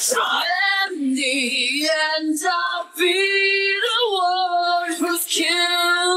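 Unaccompanied female lead vocal from a metal song, stripped of its instruments, singing long held clean notes with some vibrato. There is a brief break a little under halfway through.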